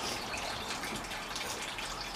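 Steady trickle of running water, an even wash of sound with faint drips.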